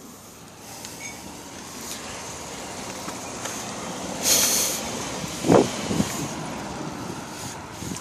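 Road traffic passing, with a short, sharp hiss a little past four seconds in and a brief pitched sound gliding down about a second later, the loudest moment.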